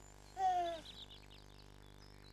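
A baby's short, high, falling coo about half a second in, followed by faint high chirps.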